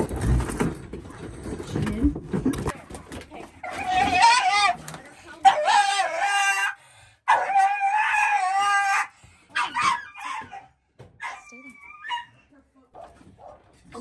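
Scuffling handling noise, then a frightened dog crying out in distress as it is handled into a crate: three long, high-pitched, wavering cries from about four to nine seconds in, followed by a few shorter yelps and whimpers.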